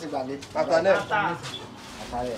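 People's voices talking, with no English words made out.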